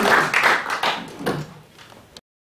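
Audience clapping with some laughter, dying away about a second and a half in.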